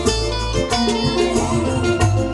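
Loud live band music on stage, with an electric keyboard and regular drum hits.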